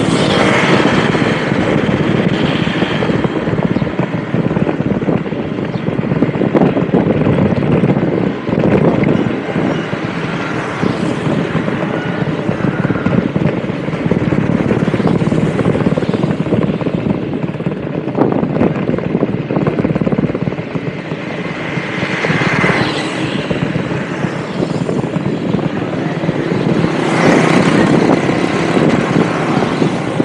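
Steady rumble of a moving vehicle's engine and road noise, with wind buffeting the microphone. The sound swells briefly twice in the last third.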